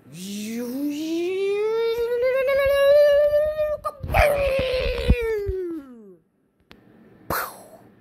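A person's voice making a mouth sound effect for a teleport: one long wavering call rising in pitch for about four seconds, then a second one falling away. In the middle come thumps of the camera being handled.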